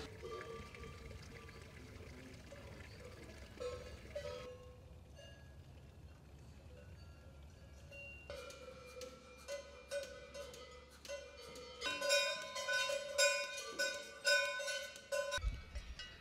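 Cowbells on dairy cows clanking irregularly as the animals move, each strike ringing on. They are faint at first and grow louder in the second half.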